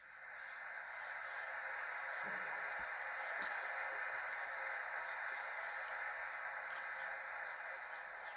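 Audience applause, a steady mass of clapping that builds over the first second or so and then holds. It is heard through a television speaker, so it sounds thin and narrow.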